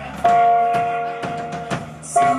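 A rock band playing live on keyboard, guitar and drums: one long held note rings over drum hits about two a second.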